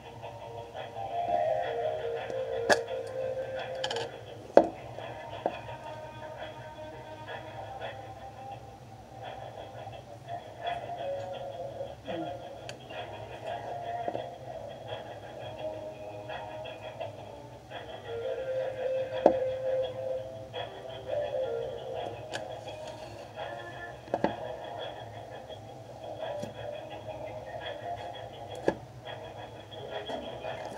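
Music with voices playing in the background, like a television or radio in the room, broken by a few sharp clicks.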